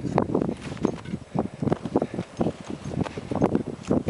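A climber's boots crunching on glacier snow in a steady run of footsteps while walking downhill.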